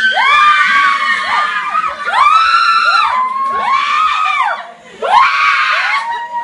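A person's high-pitched excited screams, repeated about six or seven times as rising-then-falling shrieks, each up to about a second long, with a short noisier burst of shouting about five seconds in.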